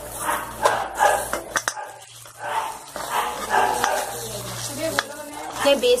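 Raw mango pieces and ground spices sizzling in hot oil in a kadai, with a spoon stirring and knocking against the pan in scattered clicks.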